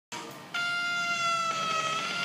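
Opening of a song's instrumental intro: a single long held note that sets in about half a second in and sags slightly in pitch.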